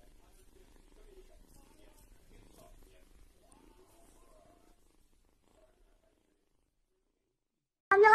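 Very faint kitten purring with a low murmur, which stops dead about five seconds in. Right at the end a loud cat cry starts abruptly, falling in pitch.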